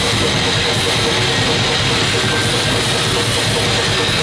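Heavy metal band playing live: distorted electric guitar over a drum kit, a dense, unbroken wall of sound.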